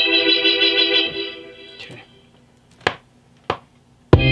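A sustained organ chord from an electronic organ sound played on a MIDI keyboard, wavering slightly. It holds for about a second, then fades out, and two short clicks follow near the end.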